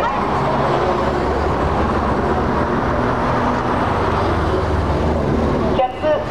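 Engines of classic Honda S-series roadsters running as the cars drive slowly past at close range, a steady low engine note.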